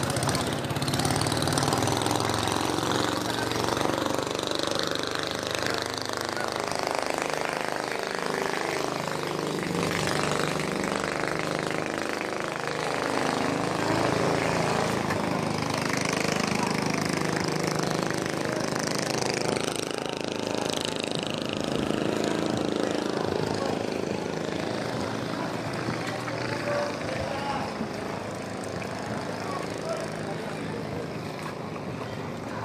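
A small boat engine running steadily, with people talking over it.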